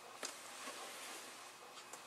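Faint room hiss with a single soft tap about a quarter of a second in.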